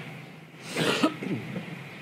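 A person coughing once, a short rough burst about three-quarters of a second in.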